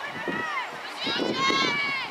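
Excited, high-pitched shouting from several voices, with a short outburst at first and a louder, longer one from about a second in.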